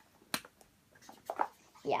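A single sharp click about a third of a second in, then a few fainter clicks a second later, from small objects being handled in the hands. A child's voice says "yeah" at the very end.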